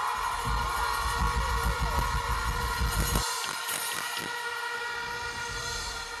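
Loud horn-like blare of several held tones over stage music. The heavy bass cuts out suddenly about three seconds in, while the horn tones carry on.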